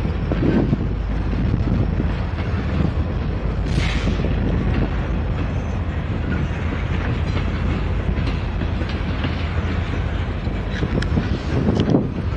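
Norfolk Southern diesel locomotives passing at low speed, a steady deep engine rumble with wheels clicking over the track. A brief higher-pitched sound comes about four seconds in, and a few sharp clicks near the end.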